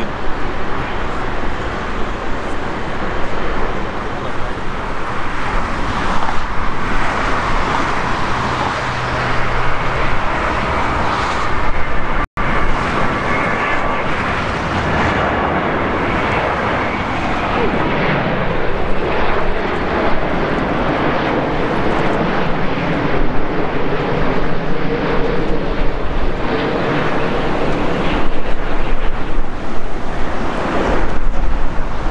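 Jet airliner engine noise, loud and steady: first a Boeing 747-400's four engines on the airfield, then, after a brief break, a Boeing 787-9 Dreamliner on final approach, with road traffic noise beneath it and gusts of wind on the microphone toward the end.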